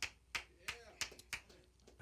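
Sparse hand clapping from a few people, a sharp clap roughly three times a second, with a faint voice briefly in the middle.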